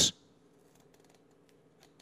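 Faint, scattered rustles and ticks of printed paper sheets being handled close to a microphone.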